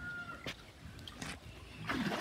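Water sloshing in a small concrete pool as a child moves about in it, with a louder splash near the end. A faint, thin whistle-like tone sounds briefly at the start.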